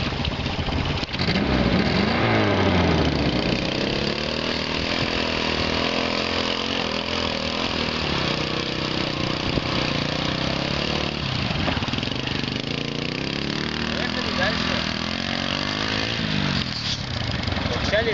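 Small engine of a homemade two-wheel-drive ATV on big low-pressure tyres working under load as it churns through mud and shallow water, with water splashing. Its pitch falls early on, varies with the throttle, and rises again near the end.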